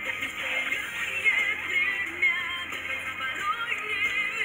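Dance music with a singing voice, the melody wavering above a steady backing.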